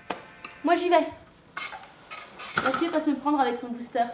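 Dishes and cutlery clinking at a counter, with a person's voice sounding in several short stretches over the clinks.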